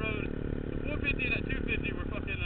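Motorcycle engine running under throttle on a track lap, its pitch rising and falling as the throttle changes, heard from on board with wind noise.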